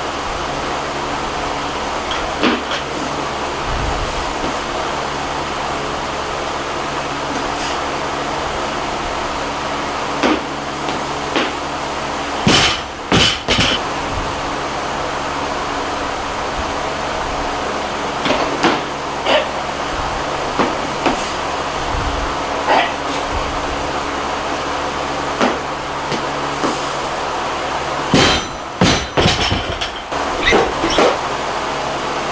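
Loaded barbell with bumper plates knocking and being set down on a lifting platform during snatch deadlifts: irregular sharp clanks and thuds, loudest a little before the middle and again near the end, over a steady background hum.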